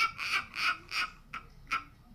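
A person's breathy laughter: short pulses about three a second that fade out within the first second. A few faint short clicks follow.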